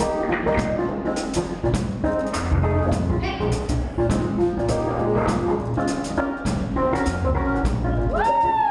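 Live pop-rock band playing: drum kit, electric guitar, electric bass and keyboard, with regular drum hits over a steady bass line.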